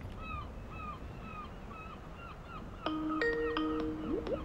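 A bird calling over and over, short calls about three a second, over a low rush of wind or surf on a rocky shore. About three seconds in, soft mallet-percussion music with bell-like notes begins.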